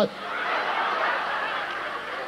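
Audience laughing, building over the first second and then slowly fading.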